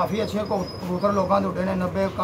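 Pigeons cooing, with men's voices talking over them.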